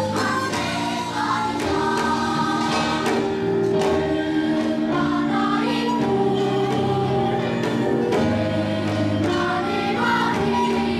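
Children's choir singing a gugak-style Korean song, accompanied by a traditional Korean ensemble of daegeum bamboo flutes and gayageum zithers.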